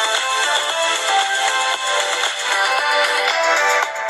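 Music played through the Asus Zenfone 3 Zoom's loudspeaker to show how loud it is. It sounds thin, with little bass.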